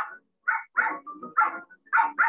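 A dog barking in a quick series of short barks, about three a second: the bark sound effect of a cartoon dog in an animated story.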